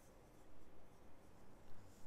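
Faint rustling and scraping of wool yarn against a metal crochet hook as single crochet stitches are worked, swelling softly about half a second in and again near the end.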